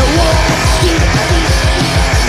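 Raw early extreme metal recording: heavily distorted guitar and bass over a fast, steady drum beat, with a wavering, sliding high note over the first second.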